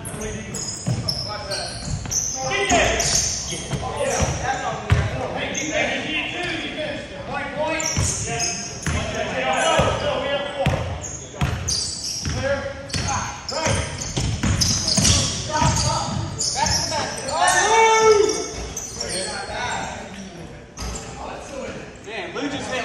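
Basketball game in a gym: a basketball bounces repeatedly on the hardwood court while players' voices call out indistinctly, echoing in the large hall.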